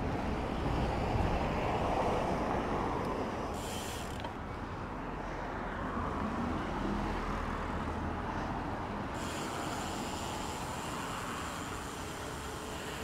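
Gravel bike rolling along tarmac: steady tyre and road noise with wind rumbling on the handlebar camera's microphone.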